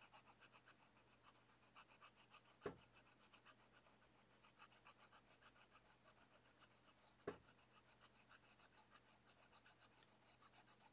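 Faint scratching of a fine-tip marker on paper in quick, short strokes, with two slightly louder ticks, one near the first third and one about two-thirds of the way through.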